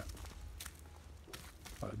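Faint footsteps on dry dirt, two or three steps a little under a second apart, with a voice starting to speak near the end.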